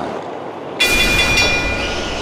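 A loud screeching noise with several high ringing tones over a low rumble. It starts abruptly a little under a second in, and the ringing tones fade after about a second while the rumble goes on.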